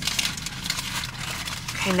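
Paper food wrapping rustling and crinkling in quick small crackles as a bagel sandwich is handled.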